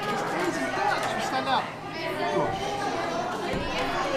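Overlapping voices and chatter in a busy restaurant dining room, with a man's and a child's voices close by over the general hubbub.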